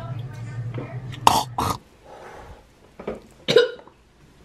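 A person coughing in short, sharp bursts: two close together about a second in and two more near the end, with a few words between.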